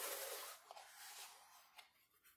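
Faint rustling of a plastic-film-covered diamond painting canvas being handled and lifted by hand, strongest in the first half second and then fading, with a couple of light ticks.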